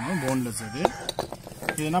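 Raw chicken pieces tipped from a plate into a stainless steel bowl, with a few sharp clinks of the plate against the steel; the loudest comes a little under a second in. A short pitched call is heard in the first half second.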